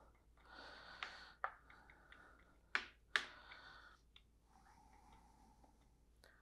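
Spatula spreading and scraping cooked rice and quinoa across a metal freeze-dryer tray: faint soft scrapes with a few sharper ticks of the spatula against the tray.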